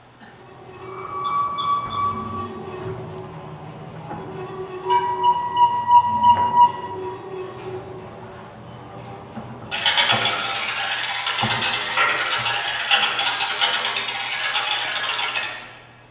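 Sparse sustained tones, then a loud, even hiss that starts suddenly about ten seconds in and cuts off abruptly near the end.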